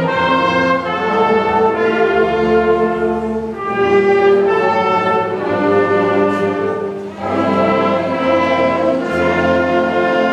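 An ensemble led by brass plays a slow piece in long, sustained chords, with phrases changing at brief dips about three and a half and seven seconds in.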